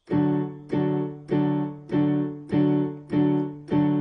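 Electronic keyboard playing a D major full chord with both hands, struck seven times at an even pace of about one strike every two-thirds of a second. Each chord fades before the next.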